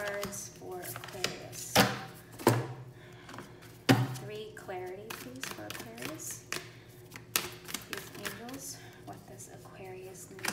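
Tarot cards being dealt and laid down on a cloth-covered table, with a few sharp card slaps and taps, the loudest about two and four seconds in, under a faint voice.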